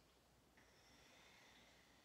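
Near silence: room tone, slightly louder from about half a second in.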